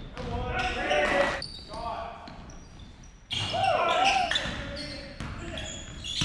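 Indoor basketball game in a gymnasium: players' wordless shouts and calls over a basketball bouncing on the hardwood court, with short high sneaker squeaks.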